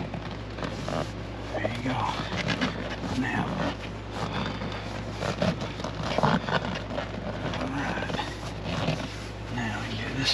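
Scattered rubbing and light knocks of a vinyl car seat cover being worked into the seat by hand, over a steady low hum, with brief snatches of low talk.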